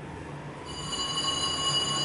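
A steady high-pitched squeal made of several tones sets in just under a second in and holds, over a faint low hum.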